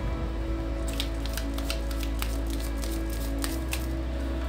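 Slow background music of held low notes, with the quick crisp clicks and flicks of a tarot deck being shuffled by hand throughout.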